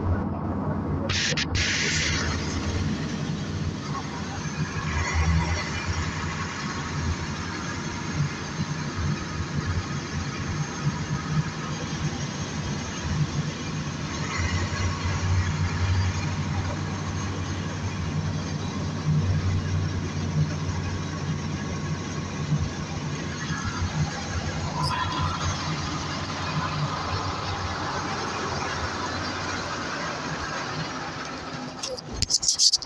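NefAZ 5299 city bus running: a steady low engine drone over road noise, with a rising whine about three-quarters of the way through.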